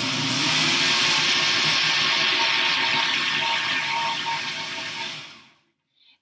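Countertop jug blender running steadily while blending an already liquid raw vegetable gazpacho to mix in added salt and pepper. The motor winds down and stops about five seconds in.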